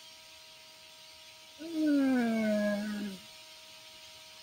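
A man's long drawn-out 'uhh' of hesitation, about a second and a half, sliding slowly down in pitch, with a faint steady hum underneath.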